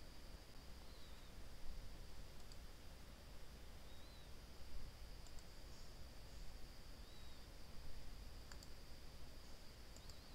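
A few faint computer mouse clicks, some in quick pairs, over quiet room hiss.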